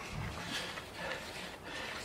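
Lawn granules poured from a cardboard box into the plastic hopper of a handheld spreader: a soft, steady rustle.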